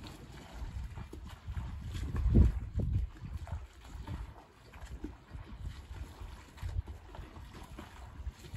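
Wind buffeting the microphone in uneven low gusts, strongest about two and a half seconds in.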